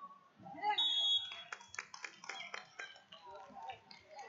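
Hands clapping quickly and steadily, about five claps a second, over voices in a gym, with a brief high whistle-like tone about a second in.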